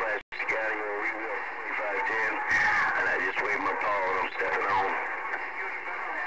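A distant station's voice coming through a Galaxy CB radio's speaker, thin and narrow-sounding over a hiss of static and too garbled to make out, with a brief drop-out just after the start.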